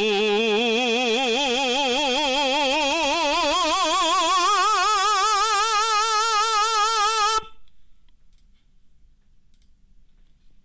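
A tenor sings one long classical 'oo' vowel with even vibrato into a handheld nasalance mask. The pitch rises slowly through the note, which cuts off about seven seconds in.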